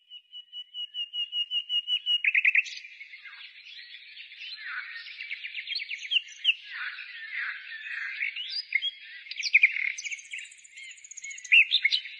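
A songbird singing: a run of repeated high notes that quickens and grows louder, then a long, varied warbling song of rapid notes and swooping glides.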